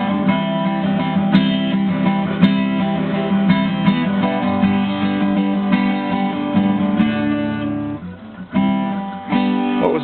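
Acoustic guitar strummed in a steady rhythm, with a short break about eight seconds in before the strumming picks up again.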